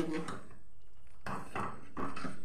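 Metal spoon scraping against a steel pan of milk in a few short strokes as sugar is stirred in.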